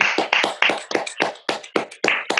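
Hands clapping quickly and steadily, about seven claps a second: applause after a poem has been read aloud.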